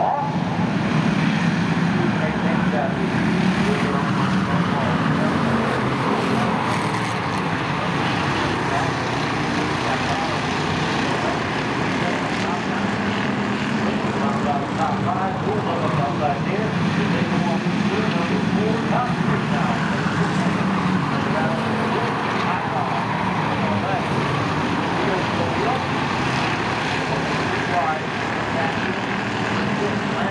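Engines of a field of Pure Stock race cars running steadily as the pack circles a short oval, with an indistinct voice underneath.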